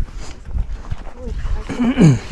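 Footsteps in soft sand with a low, irregular rumble, and a brief call from a person near the end, falling in pitch.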